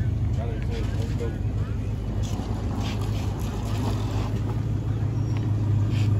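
A vehicle engine idling with a steady low hum, with faint voices in the background.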